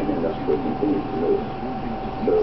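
Muffled speech from a video playing in the background, over a steady high hum.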